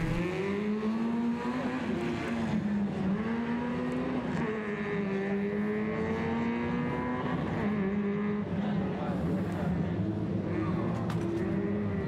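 Peugeot 106 rally car's four-cylinder engine at high revs under hard acceleration. Its pitch climbs and drops back several times at gear changes.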